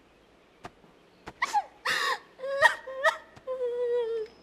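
A young woman crying: several short, catching sobs from about a second and a half in, then a longer drawn-out wail that falls slightly at the end.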